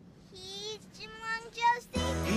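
A child's voice singing three short phrases, the first held on a steady note and the last very brief.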